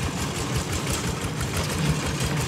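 Single-cylinder diesel engine of a two-wheel walking tractor running steadily with an even, rapid beat as it pulls a loaded trailer along a rough forest track.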